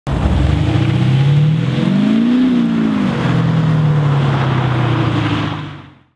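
Car engine running steadily, revving up and settling back down once about two seconds in, then fading out near the end.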